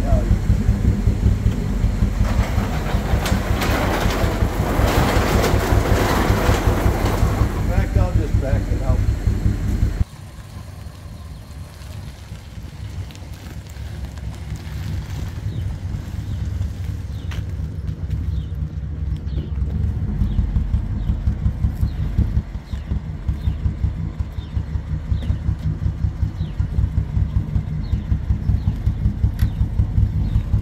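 The 312 V8 of a 1957 Ford Fairlane idling with standard mufflers, heard at the exhaust: a steady low pulsing. For the first ten seconds it is inside a building, loud and echoing. After an abrupt drop it is heard outdoors, growing louder again over the next several seconds.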